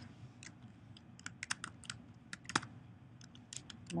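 Typing on a computer keyboard: a run of quick, irregularly spaced key clicks.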